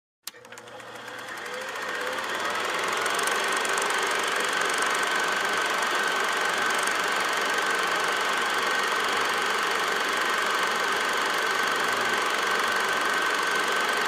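A click, then a steady mechanical running noise with a constant high whine that fades in over the first few seconds and holds steady.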